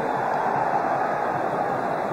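Steady crowd noise from a packed football stadium, an even din with no single event standing out.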